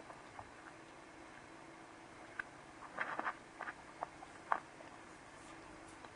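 Faint scattered mouth clicks and lip smacks, a quick cluster of several about three seconds in and single ones after, over a faint steady hum.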